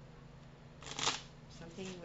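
Tarot cards being shuffled: one short rustling riffle of about half a second, about a second in.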